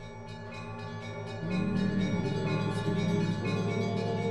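Church bells ringing a peal, many bells struck in quick succession, growing louder about one and a half seconds in.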